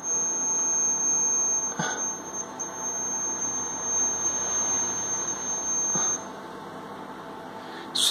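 Piezo buzzer of a homemade laser-tripwire alarm circuit sounding one steady high-pitched tone, then cutting off about six seconds in. The buzzer sounds while no laser light falls on the circuit's LDR, and it stops when the beam reaches the LDR again. A faint click comes about two seconds in.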